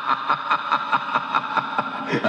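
Recorded evil, cackling laugh from the song's coda, played through a speaker into the room, pulsing about four to five times a second.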